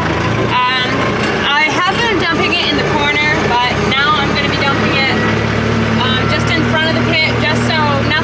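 Kubota tractor's diesel engine running steadily, heard from inside the cab, with a woman talking over it. The engine note rises slightly about five seconds in.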